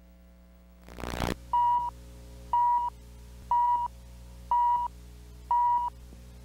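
A short burst of noise, then five short, identical high beeps, one each second, over a steady low hum. This is the countdown tone of a videotape leader.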